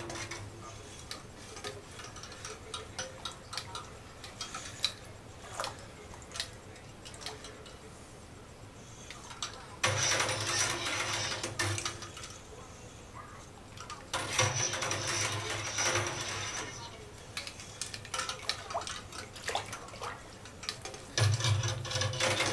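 Curds in whey being stirred by hand with a long stirring stick in a steel stockpot: liquid sloshing, with scattered light clicks and knocks of the stick against the pot. There are two louder stretches of stirring near the middle. The stirring keeps the rice-sized Parmesan curds from matting together on the bottom during the cook.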